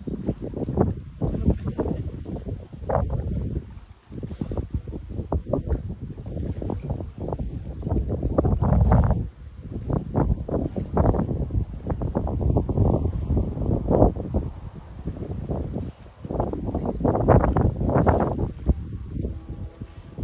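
Wind buffeting the phone's microphone, a loud low rumble that comes and goes in irregular gusts.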